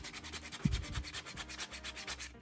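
Sandpaper rubbed by hand over a primed 3D-printed plastic helmet in a run of quick, even back-and-forth strokes, smoothing down the print's layer lines. There is one soft knock about two-thirds of a second in.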